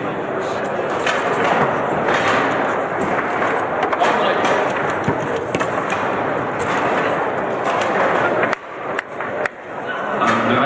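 Table-football game in play: sharp clacks and knocks of the ball and rod-mounted figures over a steady din of voices in a large hall. Near the end the background drops away, leaving a few isolated clicks.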